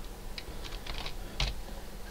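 Computer keyboard being typed: a short run of separate keystroke clicks, the loudest about one and a half seconds in.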